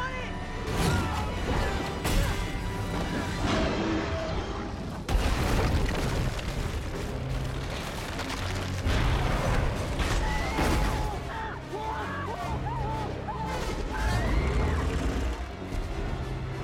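Film action soundtrack: orchestral score under heavy booms, crashes and deep rumble, with a sudden loud impact about five seconds in. Raised voices cry out in the second half.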